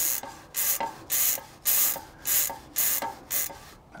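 Stiff bristle brush scrubbing a degreaser-wet bicycle cassette in quick back-and-forth strokes, a hissy scrubbing swish about twice a second, seven strokes in all.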